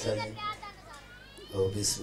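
A man's voice reciting into a microphone, dropping quieter in the middle and coming back louder near the end.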